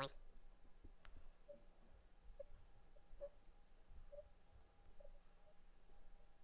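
Near silence: a faint steady hum with soft, short ticks about once a second.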